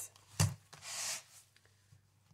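A vinyl cash-envelope budget binder being shut on a wooden table: one sharp thump about half a second in, followed by a brief rustling slide.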